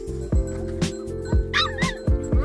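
Background music with a steady beat of about two thumps a second. Near the end, a dog gives a short, wavering high-pitched whine over it.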